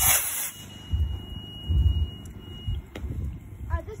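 Model rocket on an A3 motor lifting off: a short hissing whoosh right at the start that fades within about half a second. A steady high electronic tone runs on and then cuts off about three seconds in.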